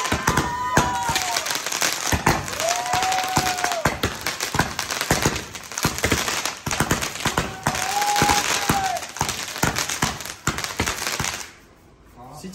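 Ground fireworks cake firing a fast, dense run of pops and crackles, with a few long tones that rise and fall over it. It stops just before the end.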